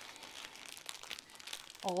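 Plastic wrapping crinkling as a shrink-wrapped bundle of bagged diamond painting drills is turned over in the hands, a fairly quiet run of small crackles.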